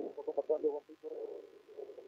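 A man's voice over a poor, narrow-band telephone or radio link, muffled and thin so the words cannot be made out.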